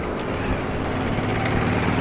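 A motor vehicle engine running steadily, a continuous low hum.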